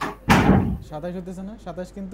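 A loud bang or thump about a third of a second in, followed by a voice talking.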